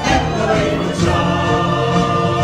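Live stage-musical number: the cast singing together in chorus over the orchestra, holding sustained chords.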